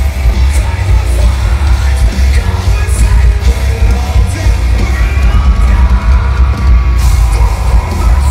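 Loud live metalcore band playing, with heavy guitars, drums and a booming bass low end under a vocalist yelling and singing into the microphone.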